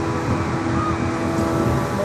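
Steady drone of large pedestal fans running, with a low rumble and a steady hum underneath.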